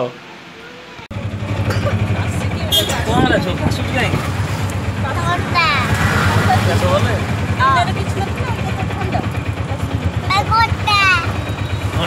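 Auto-rickshaw engine running steadily with a low, pulsing drone, heard from inside the cabin; it cuts in suddenly about a second in. A child's high voice sounds over it at times.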